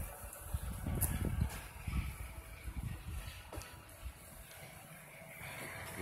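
Irregular low rumbling gusts of wind buffeting the microphone, easing off after about three and a half seconds, over a faint steady wash of water churned by a venturi pool jet.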